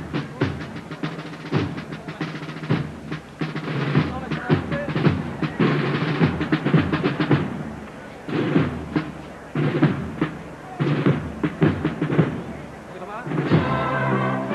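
Procession band playing a march behind the palio, with drums prominent among the pitched instruments.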